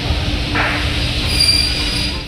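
Flatbed trolley loaded with a sheet of plywood rolling across a warehouse floor, a steady low rumble from its wheels, with a high-pitched wheel squeal joining in during the second half.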